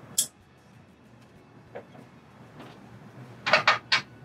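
Hand wrench clinking on steel bolts and valve hardware while the mounting bolts are tightened: a sharp click just after the start, a faint one near the middle, and a quick run of clinks near the end.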